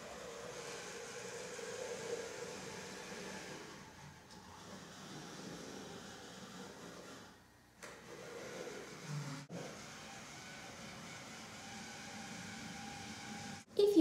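Small robot's DC gear motors whirring steadily as it drives, broken by a few abrupt cuts.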